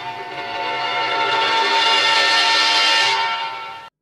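A horror film score holds one loud chord of many pitched tones for about four seconds, swelling a little before it cuts off suddenly. It is a sinister music cue that marks the magician's hypnotic gaze as evil.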